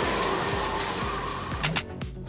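Whoosh transition sound effect that fades out over about a second and a half, over background music, with a couple of short ticks near the end.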